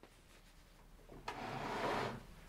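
A heavy portable toilet cabinet being dragged out across a shelf: a rough scraping slide that starts a little past halfway and lasts about a second.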